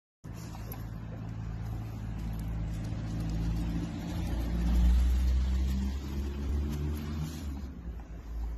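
A motor vehicle's engine running close by: a low steady hum and rumble that swells about halfway through and then eases off.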